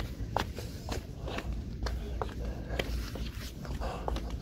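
Footsteps: an irregular string of light, quick steps over a low steady rumble.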